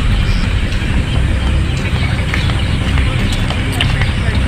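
Loud, steady low rumble of outdoor noise on a handheld microphone, typical of wind buffeting, with scattered light clicks and a voice in the background.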